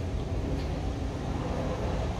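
Diesel engine of an Airman portable air compressor running steadily at a raised speed, set by turning up its speed adjustment to clear a low-engine-RPM fault.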